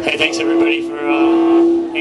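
A single held note on an amplified string instrument, steady in pitch and stopping near the end, with a man's voice over it through the stage PA.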